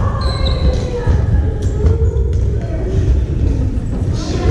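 Large gymnasium hall ambience during badminton play: a steady low rumble, voices, a brief high squeak near the start, and a couple of sharp knocks about halfway through.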